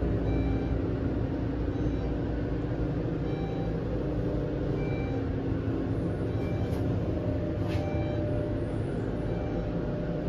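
Steady low rumble and hum of a 350 fpm Westinghouse traction elevator car running down its hoistway, heard from inside the car. A faint short high tone recurs about every second and a half.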